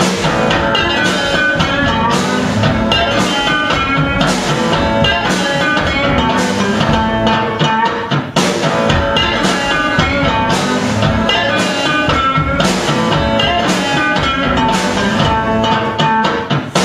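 Live instrumental passage for electric guitar and drums, the drummer striking the snare and kit with mallets under a strummed electric guitar.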